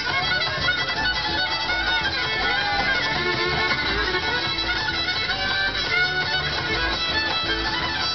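Bluegrass string band playing an instrumental break, the fiddle taking the lead with sliding melody lines over acoustic guitar and upright bass.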